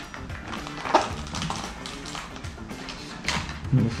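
Background music under the taps and knocks of a small cardboard box being handled and opened, with a sharp tap about a second in and two more near the end.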